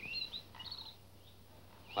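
A few short, high-pitched bird chirps in the first second, over faint background hiss.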